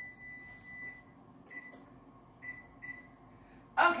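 Electronic wall oven's timer beeping: one long beep of about a second, then three short beeps, signalling that the set cooking time is up.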